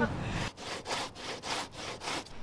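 Knife scraping in short, even hand strokes, about four a second, starting about half a second in.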